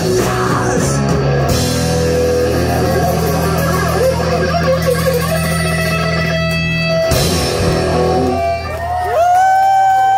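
Live three-piece rock band (electric guitar, bass guitar and drum kit) playing loud through a PA. Near the end a single held note swoops up, holds for about a second and slides back down as the song finishes.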